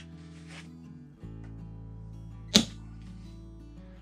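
A single sharp shot from an HPA-powered airsoft sniper rifle (JG Bar 10 with a Wolverine Bolt M) firing a BB through a chronograph, about two and a half seconds in, over steady background music.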